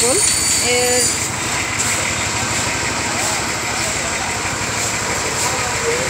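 An engine running steadily at idle, a low even pulsing hum with a constant high whine over it.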